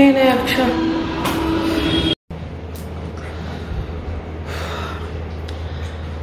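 A woman speaks briefly, then after an abrupt cut a steady low hum with an even hiss runs on.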